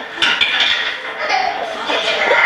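A dish clinks sharply twice near the start, over an audience laughing.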